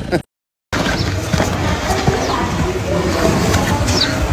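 The sound drops out for about half a second near the start, then a busy, steady outdoor din runs on, with a few short, high bird chirps above it.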